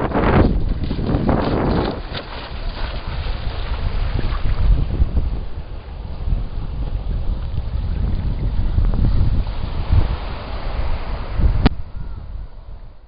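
Strong wind buffeting the microphone: a loud, uneven low rumble. A single sharp click comes near the end.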